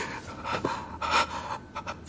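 A man breathing hard in pain, a few short breathy gasps through an open mouth.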